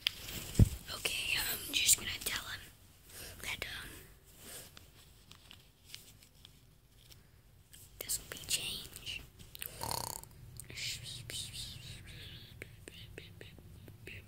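A person whispering in short, breathy phrases, with a single thump about half a second in.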